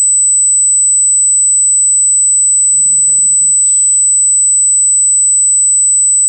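A steady, high-pitched whine runs unbroken at one constant pitch and level, the loudest thing present. About halfway through comes a short low hum of a voice, like a closed-mouth 'mm', followed by a brief hiss.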